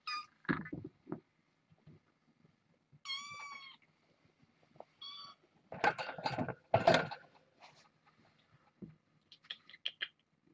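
Kitten meowing: a high, drawn-out meow about three seconds in and a short one about two seconds later. Two louder rustling thumps come between six and seven seconds.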